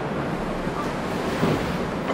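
Steady rushing noise, like air hiss or wind on the microphone, with no distinct event standing out.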